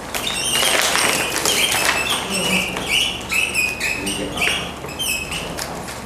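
Marker squeaking on a whiteboard as words are written: a quick run of short high squeaks, one per pen stroke, stopping about five seconds in.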